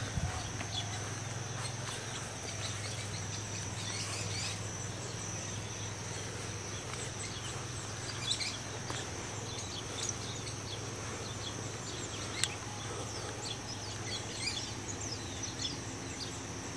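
Outdoor ambience: a steady high insect drone with scattered short bird chirps over a continuous low hum, and a couple of brief clicks.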